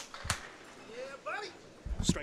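A couple of sharp knocks early on, then faint voices in the background. Near the end a candlepin bowling ball lands on the wooden lane with a low thud and starts rolling.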